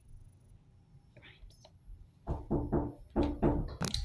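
A faint lull, then a soft person's voice without clear words, sung or hummed, for about a second and a half in the second half. It ends in a sharp click.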